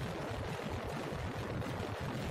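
Steady rushing wind noise on the microphone of a motorcycle riding at highway speed, mixed with road noise.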